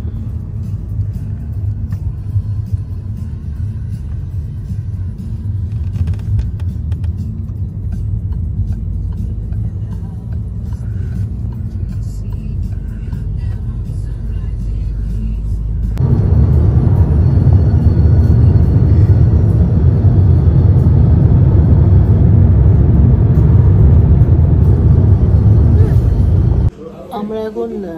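Steady low rumble of a car's engine and tyres heard from inside the cabin while driving. About 16 seconds in it jumps abruptly to a much louder, rougher road-and-wind roar.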